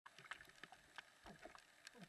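Faint, irregular ticks and drips of rain falling on a wet road surface, a few sharp taps among them.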